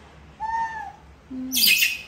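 A young macaque's short coo call: one arched tone about half a second in. It is followed by a brief low falling vocal sound and, near the end, a short noisy rustle.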